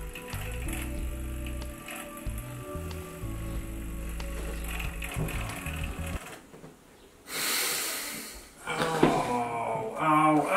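Background music with the buzz of a cordless electric shaver cutting beard hair. About six seconds in the music drops away, and a hissing whoosh lasting about a second follows.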